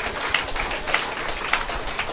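Audience reacting with scattered, irregular clapping over a low crowd murmur.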